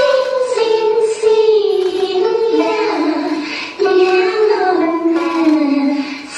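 Dance accompaniment song: a high singing voice over music, holding long notes in a slow melody that drifts downward in pitch.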